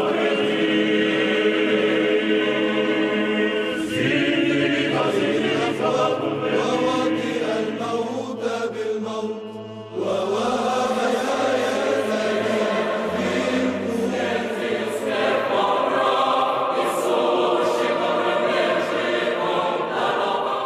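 Orthodox church choir chanting as opening theme music, voices holding long notes over steady low tones. A new phrase begins about four seconds in, and another after a short dip about ten seconds in.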